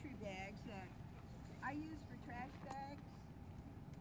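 Faint talking: a few short spoken phrases, too quiet for the words to be made out.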